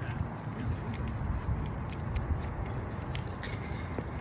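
Wind buffeting a phone's microphone: a steady low rumble, with a few faint clicks over it.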